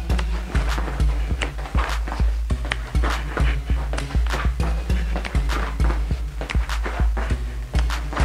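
Hip hop backing music with a heavy bass and a steady, fast beat, with no talking over it.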